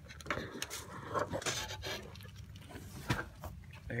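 Scattered light knocks and clatter as a fishing rod and reel are slid into the back of a car, with a few sharper taps among softer rustling handling noise.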